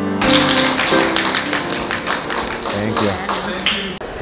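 Grand piano playing, with a quick run of sharp taps, about four or five a second, over it. The piano notes fade after about two seconds and a voice comes in during the second half.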